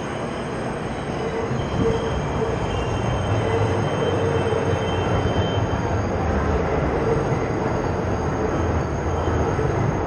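Elevated subway train running by with its wheels squealing: a steady rumble that grows louder over the first couple of seconds, with thin squealing tones on top.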